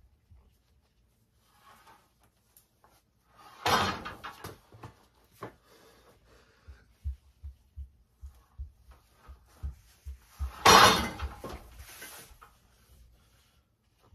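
Strap side-pressure pull on a cable weight-stack machine. Low knocks and clanks come from the stack and cable, with two loud rushing bursts of noise about four and eleven seconds in.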